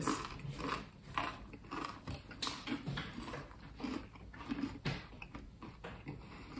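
Tortilla chips being bitten and chewed, a run of irregular crunches.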